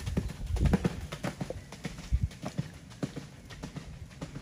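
A horse's hoofbeats at a canter on a sand arena surface, a quick uneven run of dull strikes with heavier low thumps in the first second. The horse is rushing off too fast out of the corner, which the trainer calls a bit tense.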